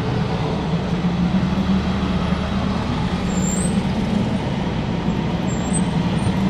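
Steady car cabin noise from inside a moving car: a low, even engine hum under road noise.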